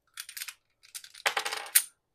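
Light metallic clicking and rattling from small metal parts being handled: a few clicks near the start, then a quick cluster of clicks a little past the middle.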